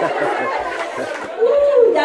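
Chatter of several adults and children talking over one another.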